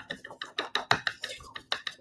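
A paint-loaded sponge dabbed repeatedly onto a paper pad to blend acrylic colours: quick, irregular soft taps, about five a second.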